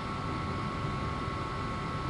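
Room tone: a steady hiss with a faint high hum, nothing else happening.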